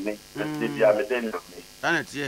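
Speech: a person talking over a radio studio microphone in two short phrases with a brief pause between.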